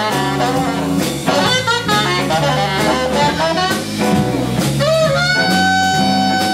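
Live jazz combo: a saxophone plays a quick run of notes over stepping bass notes, electric guitar and drum kit, then settles on a long held note about five seconds in.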